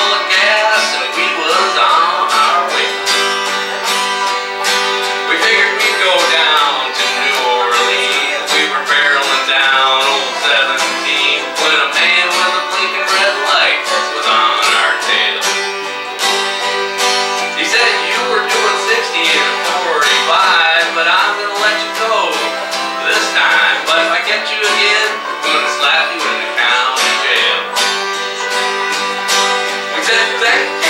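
Small acoustic country string band playing a tune in G: strummed acoustic guitar over an acoustic bass, with other plucked strings.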